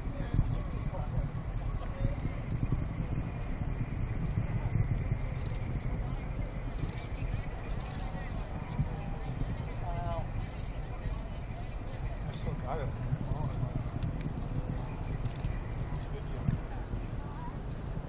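Faint murmur of onlookers talking over a steady low rumble, with a few brief clicks; a man says "there" near the end.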